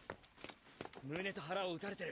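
A voice speaks one short phrase about a second in, after a few sharp clicks.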